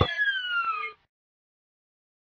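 Cartoon falling-whistle sound effect: a few whistling tones gliding steadily down in pitch together for about a second, then cutting off abruptly.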